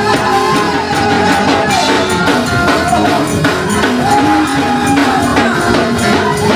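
Gospel praise-break music slowed down and pitched lower in a chopped-and-screwed edit: a steady fast beat of percussion hits under a sliding, held melody line.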